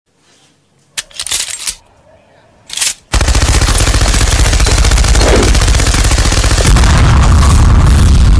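Machine-gun fire sound effect: a long unbroken burst of rapid shots that starts about three seconds in, after two short noisy bursts.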